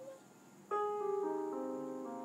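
Piano accompaniment: the tail of a sung note fades, and after a short pause a piano comes in about two-thirds of a second in, playing slow sustained chords that step from note to note.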